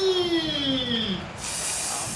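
A man's long, drawn-out exclamation that slides down in pitch and fades about a second in, followed by a hissing "sss" through the teeth: a reaction to a shot that only just missed.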